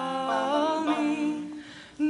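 Mixed a cappella vocal group singing held, wordless harmonies, several voices sounding a chord together while one line moves above it. The chord fades away near the end.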